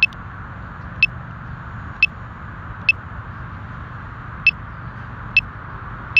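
Short high-pitched beeps, about one a second and unevenly spaced, over a steady low hum and hiss.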